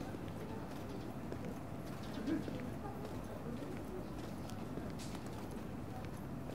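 Footsteps on pavement: irregular clicking of shoes, over indistinct chatter of passers-by, with one brief louder sound about two seconds in.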